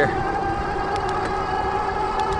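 1000 W rear hub motor of a fat-tyre e-bike giving a steady whine as it pulls the bike up to speed under pedal assist, over wind and road noise.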